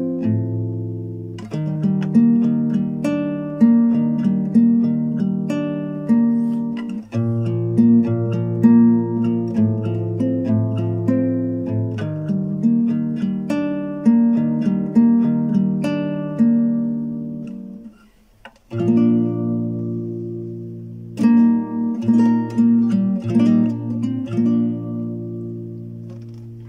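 Capoed classical guitar playing picked chords, the notes of each chord sounding one after another in a repeating pattern. About 18 s in the playing stops for under a second, then resumes and lets the last chord ring out to fade near the end.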